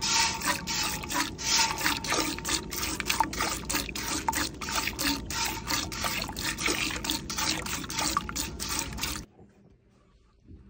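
Cow being hand-milked into a stainless steel pail: squirts of milk hitting the milk already in the pail in an even rhythm of about four a second. The squirting stops suddenly near the end.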